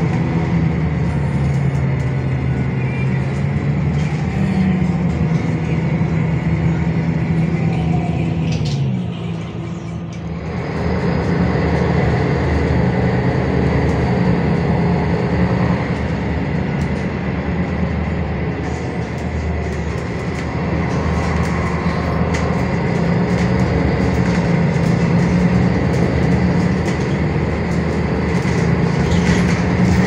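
MAN D2066 LUH-32 diesel engine of an MAN NL323F city bus, heard from inside the passenger cabin while under way, with a steady high whine alongside. The engine note falls about eight seconds in and goes quieter briefly, then the bus pulls away again and keeps running.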